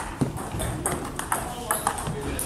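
Table tennis balls clicking off bats and tables during a rally, several sharp irregular hits within two seconds, with hits from other tables mixed in.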